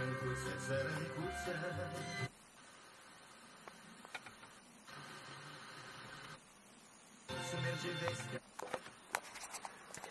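Renault Espace IV's factory radio playing an FM broadcast, mostly music, at low volume through the car's Cabasse speakers. The audio cuts out about two seconds in as the set jumps to another station, stays almost silent, and comes back with a new station about seven seconds in.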